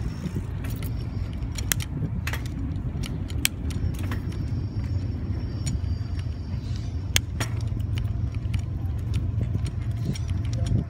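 Bicycle being ridden on a paved street: a steady low rumble, wind on the microphone and tyres on the road, with many small sharp clicks and rattles from the bike's parts.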